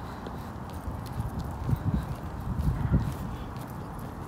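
Footsteps of someone walking, with irregular low thumps of wind and handling on a hand-held phone microphone, strongest a couple of seconds in.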